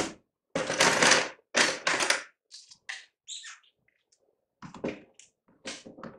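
Large plastic spring clamps being handled and clipped onto the edge of a plywood board: two loud scraping clatters in the first two seconds, then lighter clicks and taps.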